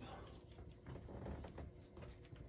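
Faint handling noise with a few light metal clicks as small channel-lock pliers grip and turn a loose fitting on a gas boiler's pilot burner assembly.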